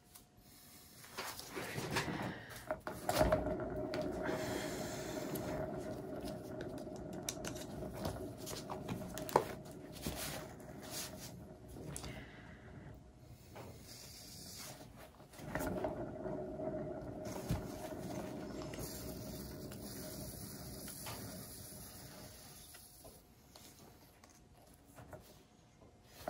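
A paint-pouring turntable spun by hand twice, about a second in and again about fifteen seconds in, with the canvas on it. Each time it gives a steady rolling hum that fades as it slows down. A single sharp click comes about nine seconds in.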